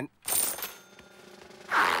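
Cartoon sound effect of a coin clinking as it is dropped into a money bag: one sudden metallic chink with a short ring that dies away within a second. A brief rushing noise follows near the end.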